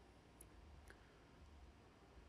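Near silence broken by two faint computer-mouse clicks about half a second apart.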